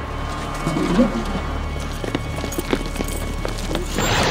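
Background music with running footsteps slapping on pavement, and a short vocal sound about a second in.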